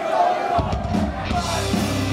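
A punk rock band playing live in a club with a voice over the music. The full band, drums and low end, comes in about half a second in.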